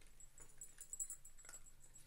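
Faint clicking and crunching of a cat chewing a treat, with one sharper click about a second in.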